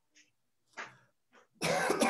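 A person coughing over a video-call microphone: a few small coughs, then a louder, longer cough near the end.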